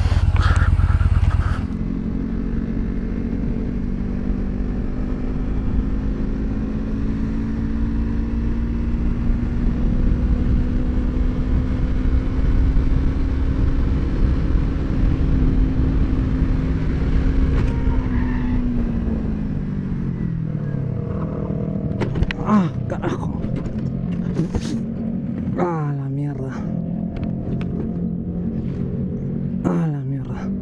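Motorcycle engine heard from the rider's helmet camera, running at a steady cruise under a rush of wind. Its note rises slightly and then drops away about two-thirds of the way through as the bike slows. It then settles into a lower, steady note.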